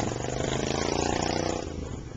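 Engine of an off-road cart running steadily under load as it climbs a steep dirt trail, easing off near the end.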